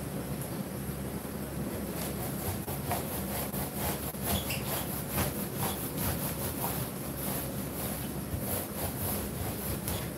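Paint roller on an extension pole being worked back and forth over a large flat projector screen: a repeated rubbing swish that starts about two seconds in, over a steady low hum.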